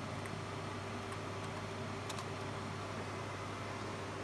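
Steady hum and fan noise from running computer and radio lab equipment, with a few faint light clicks.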